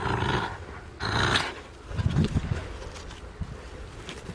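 Corgi puppy barking twice at close range, followed about two seconds in by a short low rumble.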